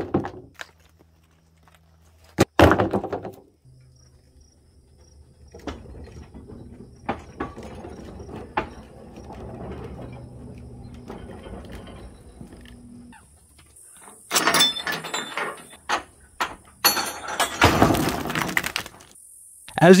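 A small Peteler two-foot-gauge gravel dump car being tipped by hand: a sharp clank of iron, then a long run of light clicking and rattling from its iron fittings and pivots, and two loud clatters near the end as the load of rocks slides off and lands on the ground. Insects chirp steadily in the background through the second half.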